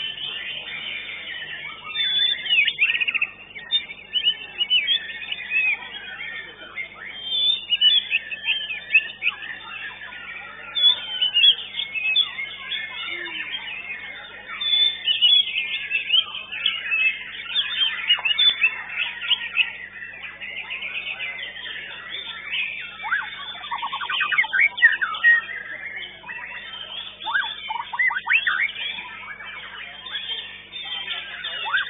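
White-rumped shama (murai batu) singing a loud, varied competition song of quick whistles and chirps, with a stretch of rapid trills a little after the middle.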